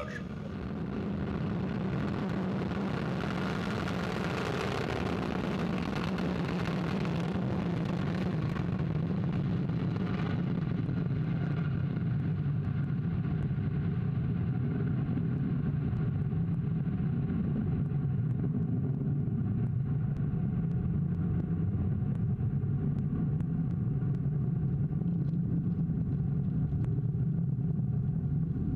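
Vega rocket's P80 solid-fuel first-stage motor firing at liftoff and climbing away. A loud, continuous rumble whose harsher upper part fades after about eight to ten seconds, leaving a steady low rumble.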